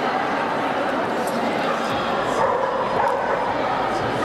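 Steady murmur of many voices echoing in a large hall, with dogs yipping and barking a few times, most noticeably in the second half.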